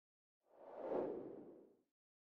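A soft whoosh sound effect that swells and fades over about a second.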